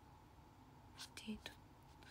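Near silence, broken about a second in by a few soft, half-whispered syllables from a woman murmuring to herself.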